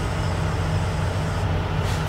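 Semi-truck's diesel engine idling, heard from inside the cab as a steady low hum.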